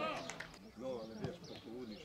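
Voices of football players and onlookers calling out across an open pitch, several shouts overlapping.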